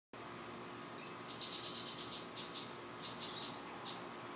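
Birds chirping in a backyard: a run of short, high-pitched chirps and brief whistled notes, starting about a second in.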